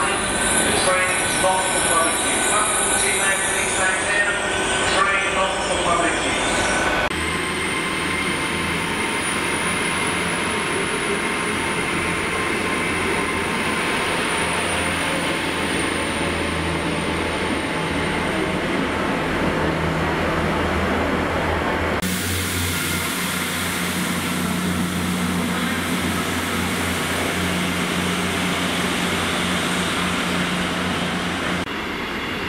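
Hitachi Class 800 train running past a station platform: a rumble of wheels on rail with high squealing tones over the first several seconds, then a steadier passing rumble. In the last several seconds a diesel multiple unit's low, steady engine hum.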